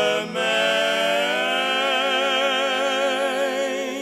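Male voices singing in close harmony, holding one long chord with vibrato after a brief break about a third of a second in.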